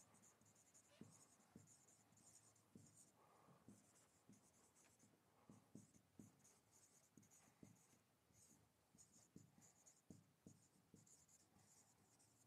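Very faint writing strokes: short, scratchy, irregular strokes with scattered light taps, as of a pen or marker on a board.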